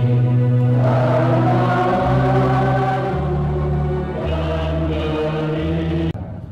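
A choir singing a slow hymn in long held notes, the pitch moving to a new chord every second or so.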